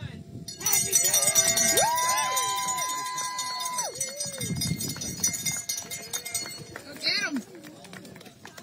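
A cowbell clanging rapidly for about three and a half seconds, the signal that starts a new loop of a backyard ultra, mixed with whoops and cheers from the runners and onlookers. A last whoop rings out about seven seconds in as the runners set off.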